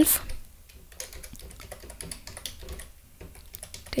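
Typing on a computer keyboard: a run of light, irregular key clicks.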